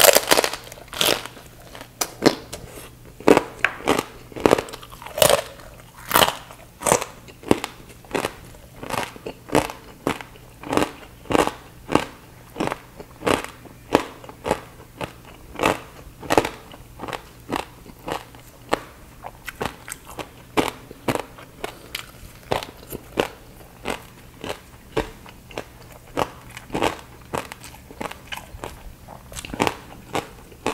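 Crispy baked pork belly skin crunching between the teeth, close to the microphone: a sharp bite at the start, then chewing crunches about every half second.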